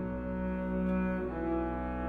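Two double basses bowing long held notes together, moving to new pitches about halfway through.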